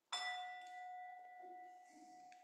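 A small bell struck once, just after the start, ringing on with a long, slowly fading tone and several higher overtones. It marks the start of a moment of silent reflection.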